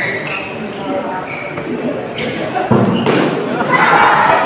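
Spectators chattering in a large indoor sports hall during a badminton rally, with a sudden loud thud about two and a half seconds in. The crowd's voices then swell into a louder reaction near the end as the point ends.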